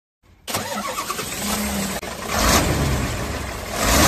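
Car engine starting and running, dubbed over toy cars as a sound effect; it breaks off briefly about halfway through, then picks up and gets louder near the end.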